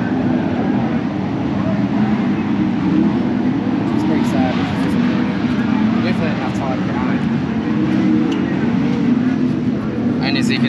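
Steady engine drone throughout, with indistinct voices over it.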